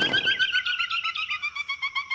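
Cartoon sound effect of tweeting birds: a rapid, even string of short chirps that slowly falls in pitch. It is the usual cue for characters knocked dizzy.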